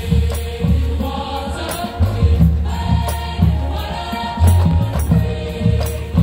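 A high school marching band playing its field show: held chords over strong low bass, with percussion hits a little more than once a second.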